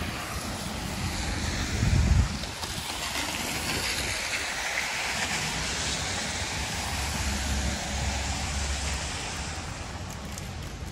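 Traffic passing on a wet, slushy city avenue: tyre hiss swells to a peak about halfway through and then fades. Wind buffets the microphone, loudest about two seconds in and again near the end.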